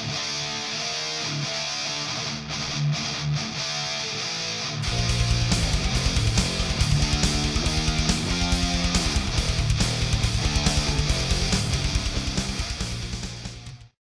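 Schecter Sun Valley FR Shredder electric guitar playing a distorted, high-gain metal riff through a Mesa tube amp. About five seconds in, a fast pulsing backing beat and the full mix come in. The sound fades near the end and cuts off.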